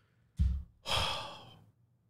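A man sighs heavily into a close microphone: a short puff of breath hits the mic, then a long exhale fades away.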